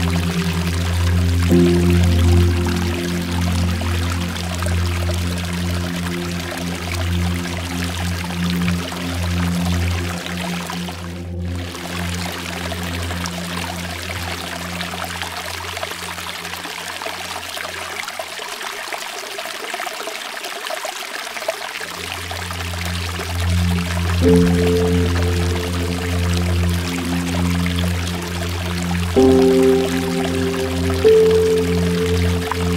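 Steady rush of water pouring and trickling, like a small waterfall over rock, with a brief break in the water sound about a third of the way in. Under it, slow sustained music chords that fade away in the middle and come back with new chords in the last third.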